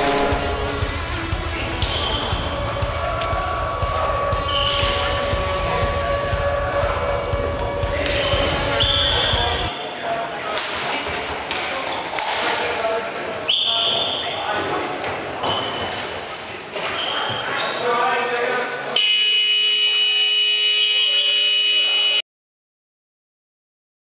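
Indoor floorball-style hockey in an echoing gym hall: repeated sharp clacks of plastic sticks hitting the ball and the ball hitting the boards, short shoe squeaks on the floor and players calling out. About three seconds before the end a steady tone sets in and holds.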